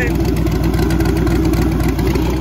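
A truck engine running at a steady speed, with a turbocharger mounted on the truck spinning.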